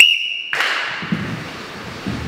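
A short, steady high-pitched whistle tone lasting about half a second, then the gym's room noise with a few faint thuds.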